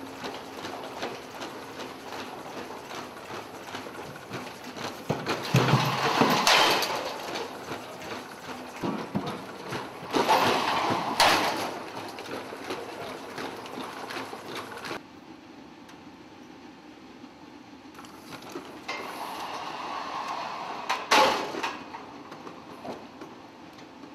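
A four-legged, hydraulically driven Boston Dynamics robot walking on a concrete floor: its feet knock and scrape in a loose rhythm over a steady mechanical hiss, with a few louder clatters. The sound drops quieter about two-thirds of the way through.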